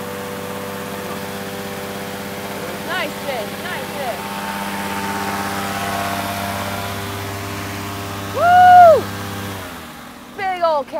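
An engine on a bowfishing boat hums steadily, with brief voices about three seconds in and a loud rising-and-falling whooping cheer near the end. The hum cuts off just before the end.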